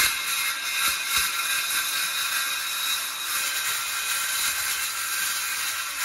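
Ryobi cordless circular saw cutting through a rigid-core vinyl floor plank, a steady high whine with several tones over a hiss.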